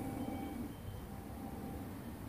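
Quiet, steady low background rumble with no distinct events.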